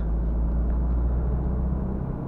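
In-cabin drone of a Renault Clio IV's 1.5 dCi four-cylinder turbodiesel with road and tyre noise as the car accelerates at town speed, a steady low rumble.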